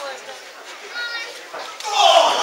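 Small wrestling-show audience in a hall, with a high-pitched voice, likely a child's, calling out about a second in over low crowd noise.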